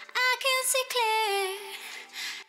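Female lead vocal from a liquid drum and bass track, singing a short phrase whose notes step and then slide down in pitch near the end. It is washed in reverb and delay, with layered background 'ooh' vocals behind it, and has no drums or bass under it.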